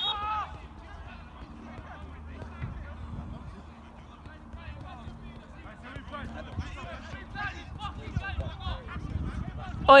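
Distant voices of footballers calling and shouting across an outdoor pitch during a stoppage, over a low steady rumble.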